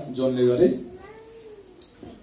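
A voice speaks briefly, then a single faint, drawn-out call rises and falls in pitch for about a second.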